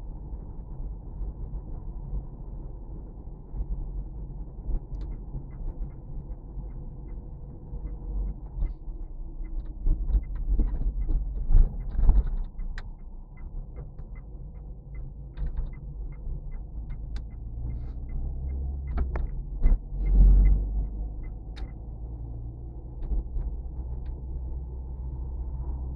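Car driving, heard from inside the cabin: a steady low rumble of engine and tyres that swells louder twice, with a few sharp knocks from the road. Through the middle a turn-signal relay ticks evenly, about twice a second.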